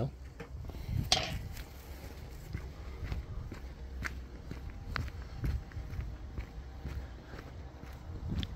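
Footsteps of a person walking across a tarmac road, a series of short scuffing steps over a low rumble.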